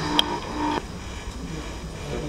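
Low, steady room hum through the conference sound system, with a single click near the start and a brief steady tone that stops about a second in.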